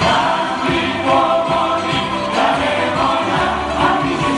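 A group of male and female singers singing a Greek song together into microphones, with a band accompanying them.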